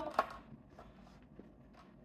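Digital kitchen scale with a clear plastic tray being handled and set down on a stone countertop: one sharp click just after the start, then a few faint taps.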